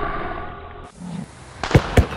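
Sound effects: a steady sound with several held tones fades out and cuts off about halfway through. After a short lull come two sharp bangs near the end, the second the loudest.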